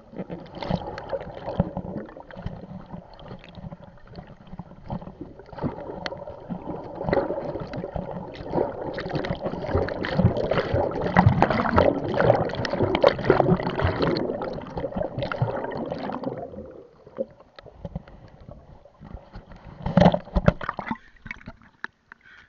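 Water sloshing and gurgling around an action camera held in the sea, with many irregular knocks and splashes from swimming strokes. It is loudest in the middle and dies down a few seconds before the end, apart from one short burst of splashing.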